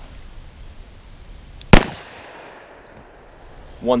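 A single shot from a Smith & Wesson Model 637 snub-nose .38 Special revolver with a 1 7/8-inch barrel, firing a Corbon .38 Special +P 110-grain hollow point, a little before halfway in, with a short echo trailing off.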